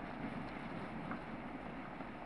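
Steady, low road-traffic rumble from a heavily loaded lorry and a passing car on a gravel road, with wind noise on the microphone.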